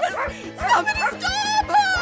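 Small cartoon dog barking and yapping, with a woman yelling, over background music with a steady beat.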